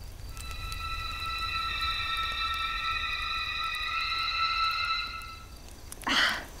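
A held chord of several steady high electronic tones, swelling slowly and fading out about five and a half seconds in, over a low steady rumble.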